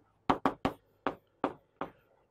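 Chalk knocking on a chalkboard while writing: six short, sharp taps in quick, uneven succession, each fading fast.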